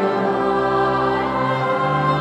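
A choir singing slow, held liturgical music over a sustained accompaniment, its bass note changing about a second and a half in.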